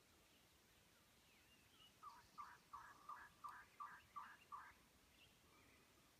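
Faint series of about eight turkey yelps, about three a second, with a few faint higher bird chirps around them.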